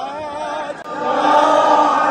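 A single voice chanting a bending melodic line, then about a second in a large crowd of men joins in and chants together, much louder and fuller. This is devotional chanting.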